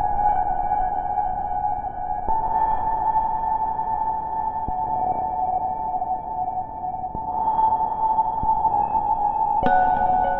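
Ambient instrumental music: sustained, drone-like synthesizer tones that shift to a new chord about two seconds in. A sharp new note is struck just before the end.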